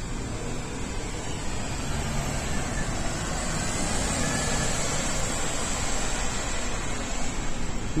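Three-axle city bus driving past close by: a steady engine rumble with tyre and road noise that swells slightly as it goes by.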